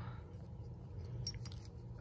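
Faint clinks and clicks of small corroded metal finds, a watch face and its ring, being picked up and handled on a towel, over a steady low hum.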